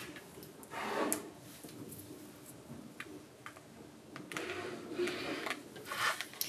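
Quiet handling of craft materials on a cutting mat: double-sided tape pulled off its roll in two short stretches, about a second in and again near the end, with a few light clicks between.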